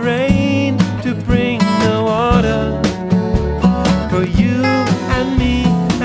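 Full stereo mix of a song, played back through a Dangerous Music 2-BUS+ summing amp with its Harmonics analog effect bypassed. This is the dry reference before the effect is switched in on the whole mix.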